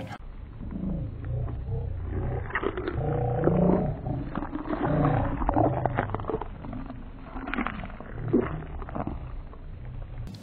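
Audio played back several times slower than normal. Voices and mouth sounds come out very deep and drawn out, in long low bending tones with scattered clicks.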